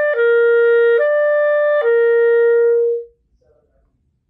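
Clarinet slurring between middle E and middle C: E, down to C just after the start, back up to E about a second in, then down to C, held until it stops about three seconds in. The note changes are clean, with no stray note between them, played with finger leading (ring finger and pinky timed against each other).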